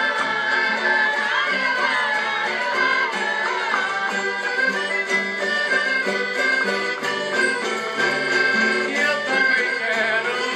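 Live Portuguese folk music played for a vira dance by a traditional group's band, with sustained instrumental notes and voices singing along.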